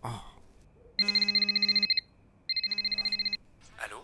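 Telephone ringing twice: two fast-trilling electronic rings, each just under a second long, with a short pause between them.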